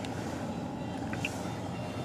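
Low steady hum of a car heard from inside its cabin, with a faint light click or two about a second in.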